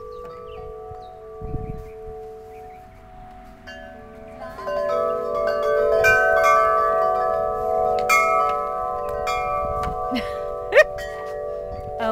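Chimes ringing: many long, overlapping bell-like tones that swell louder about halfway through, with a sharp knock near the end.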